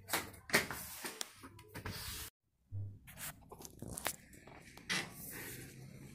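Scattered knocks, clicks and scrapes of handling and cleaning noise, broken by a short gap of complete silence a little over two seconds in.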